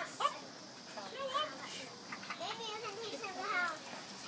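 Quiet voices of onlookers with a dog vocalizing among them, in short pitched bursts about a second in and again later.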